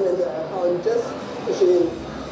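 A woman's voice speaking, with no other sound standing out.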